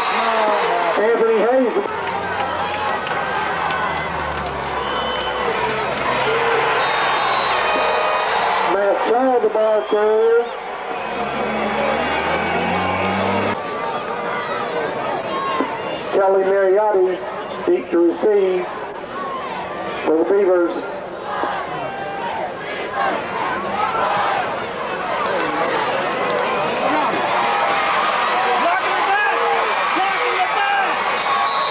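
Spectators in the stands of a football game talking and calling out all at once, with a few louder shouts standing out. Low held tones that change pitch in steps run under the first half.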